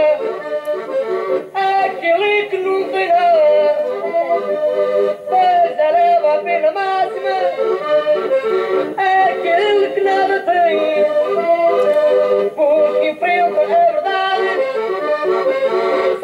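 Accordion playing a folk tune: an ornamented melody over sustained chord notes.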